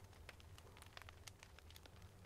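Near silence with faint, irregular crackling from a wood fire burning in the fireplace.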